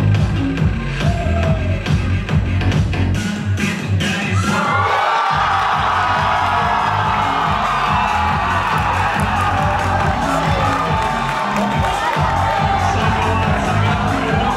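Dance music with a steady beat; about four seconds in, a crowd breaks into cheering, shouting and whooping that carries on over the music.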